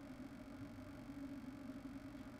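Quiet room tone: a faint steady low hum with light hiss.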